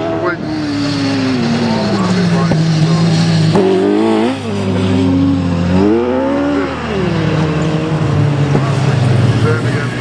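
Autograss race cars on a dirt oval, a single-seater special and saloon cars, their engines running hard through a bend. The engine note falls steadily over the first couple of seconds, then rises and drops again in short throttle bursts about four and six seconds in.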